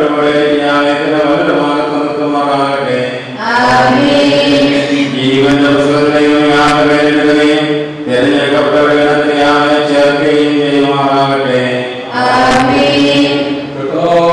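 Voices singing a slow church hymn in long held phrases of about four seconds each, with brief breaks between them.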